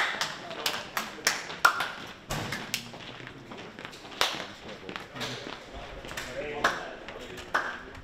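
Repeated sharp hand slaps from high-fives and handshakes at irregular intervals, mixed with footsteps on a hard floor and short voiced greetings.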